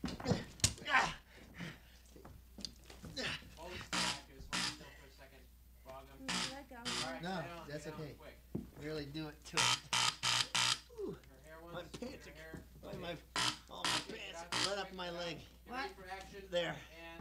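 A person's voice, speaking or vocalizing without clear words, with a few sharp clicks about a second in.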